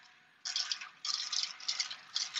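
Shark UltraLight corded stick vacuum in handheld mode sucking up loose debris from a countertop: an irregular run of crackles and rattles of bits being pulled into the nozzle, starting about half a second in.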